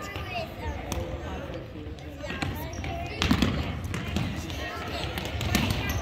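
Futsal ball being kicked and bouncing on a hardwood gym floor, with sharp thuds about two, three and five and a half seconds in, in a gymnasium's echo. Background voices of players and spectators run underneath.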